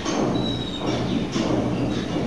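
Marker pen writing on a paper sheet, its strokes scratching and squeaking, over a steady low background hum.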